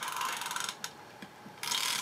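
Film advance of a 1932 Rolleiflex Old Standard twin-lens reflex being wound, giving a fast run of small ratchet clicks that stops briefly midway and starts again near the end. The winding draws the 120 paper backing onto the take-up spool until it catches.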